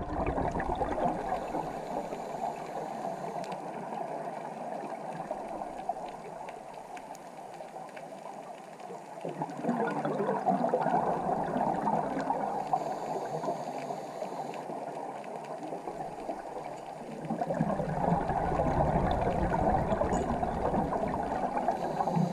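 Scuba regulator exhaust bubbles gurgling and rushing, heard through an underwater camera's microphone. The bubbling swells three times, about once every eight seconds, with steadier water hiss in between.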